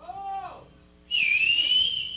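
A loud, piercing human whistle starts about a second in, dipping and then rising slightly in pitch, and is held for about a second and a half. A short rising-and-falling vocal call comes just before it.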